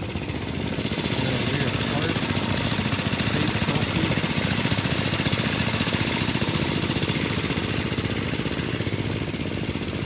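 A small engine running steadily with a rapid, even firing beat, growing louder about a second in and easing off near the end.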